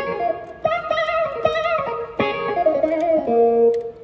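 Clavinet tone played on a Nord keyboard: a short phrase of plucked-sounding notes, dry, with a wavering warble on the held notes.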